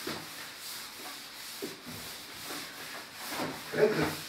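Blackboard being wiped by hand with an eraser: a series of irregular rubbing strokes across the board's surface.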